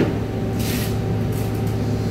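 Steady machine hum, with a short hiss about half a second in.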